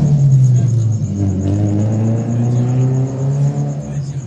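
A loud car passing by, its engine a steady low drone that dips slightly in pitch about a second in.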